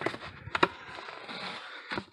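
Corrugated cardboard Gemini comic mailer being folded over by hand. A couple of sharp clicks come about half a second in, then a longer rustling scrape of cardboard sliding over cardboard.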